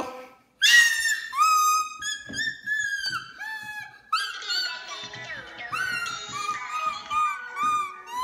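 A child blowing a small yellow toy wind instrument, sounding a string of high notes that bend and slide in pitch, with short breaks between them.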